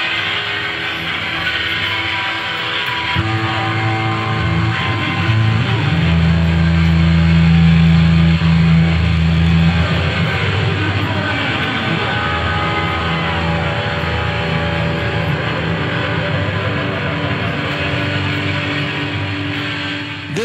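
Live pop band playing: electric guitar over bass and drums, with deep bass notes loudest around the middle.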